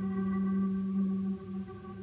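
Dhrupad singing with a bowed double bass, a long note held steady on one low pitch in a reverberant stone church. About a second and a half in, the loudest part stops and the sound dies away into the echo.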